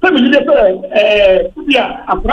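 Speech only: a person talking continuously, with no other sound standing out.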